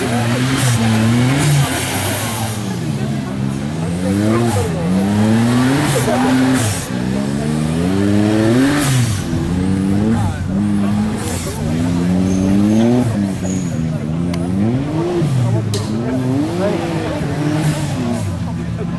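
Small four-wheel-drive's engine revved up and down again and again as it crawls through a muddy off-road trial section, each burst of throttle rising and falling in pitch. A few short sharp noises come in between.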